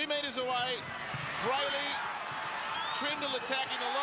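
Rugby league TV broadcast audio: a commentator talking over steady stadium crowd noise as a try is scored.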